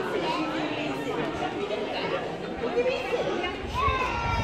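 Several voices chattering over one another, children and adults talking at once, with no single clear speaker.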